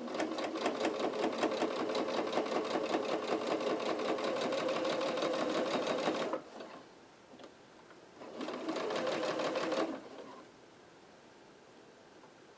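Domestic sewing machine stitching with rapid, even needle strokes: a run of about six seconds, a pause of about two seconds, then a shorter burst of about a second and a half. It is sewing shut the turning gap in a stocking's lining.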